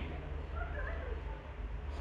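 Low steady hum and background room noise, with one faint, short, wavering high-pitched sound about half a second in.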